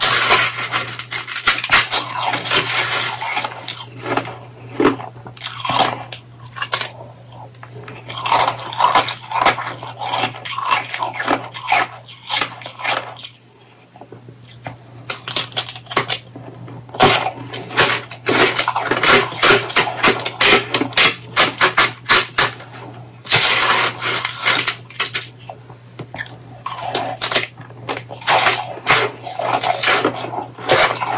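Close-up crunching and chewing of mouthfuls of powdery shaved ice, a dense crackle in runs, with a red plastic spoon scraping and scooping the ice on a plate. There is a short lull about halfway, and a steady low hum underneath.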